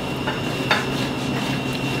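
Cooked potato being grated on a stainless-steel box grater: soft, irregular scraping strokes, with a light click about two thirds of a second in.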